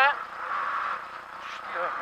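Renault Clio class A7 rally car's engine and road noise heard from inside the cabin at speed, louder for a moment before easing off about halfway through.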